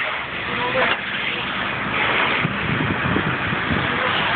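Steady rushing hiss of a fire hose jet spraying water onto a burning car, over the running engine and pump of a fire appliance, with faint voices.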